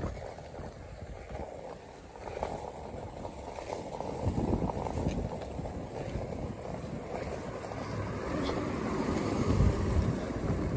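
Wind buffeting the microphone as it moves along a street: a gusty low rumble that grows louder from about halfway through.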